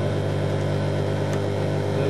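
A steady low hum that does not change in pitch or level.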